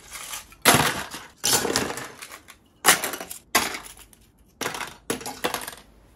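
Small 3D-printed plastic pieces clattering as they are dropped and shuffled into clear plastic storage boxes, in about seven short rattling bursts.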